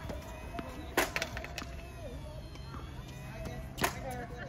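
Sharp pops of tennis balls on a hard court: a loud one about a second in and another near the end, with lighter knocks between. Faint children's voices are in the background.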